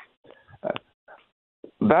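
A pause in a man's speech over a telephone line, filled by a few faint, short breath and mouth noises and a click, before he starts talking again near the end.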